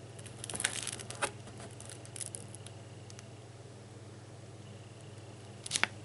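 Paper pages of an old comic book crinkling as they are handled and turned. A burst of crackles comes about half a second in, a few more around two seconds, and a short, sharper crackle near the end, over a steady low hum.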